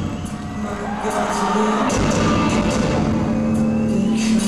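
Live rock band playing: sustained guitar and bass notes over drums and cymbals. The music dips briefly at the start and builds back up after about a second.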